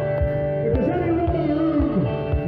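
Country music played live: guitar-led accompaniment over a steady bass beat, with a singer's voice.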